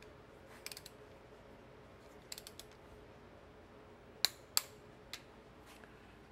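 Light metal clicks and taps of a socket and torque wrench being fitted onto intake manifold bolts, scattered and faint, with two sharper clicks about a third of a second apart a little past the middle.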